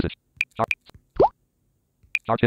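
Phone screen-reader sound cues: short high ticks as the focus steps between menu items, then a quick upward-sliding plop about a second in, with a clipped snatch of synthetic voice.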